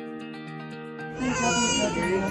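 Soft background music, then about a second in an infant starts crying loudly, a distressed cry during a COVID swab test.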